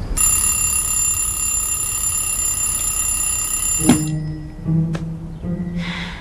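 A steady, high electronic ringing tone that holds for about four seconds and cuts off with a sharp click, followed by light mallet-percussion music.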